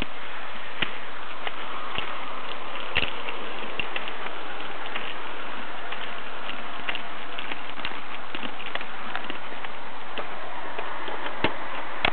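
Steady static hiss with scattered crackling clicks: the background noise of a police dashcam's audio feed, with a few louder ticks about a second in, around three seconds in and near the end.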